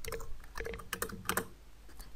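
Computer keyboard being typed on: several quick keystroke clicks, most of them in the first second and a half, as code is entered.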